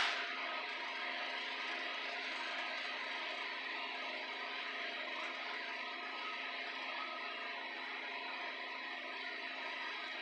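Steady background hiss with faint steady hum tones, unchanging throughout, with no distinct sound events.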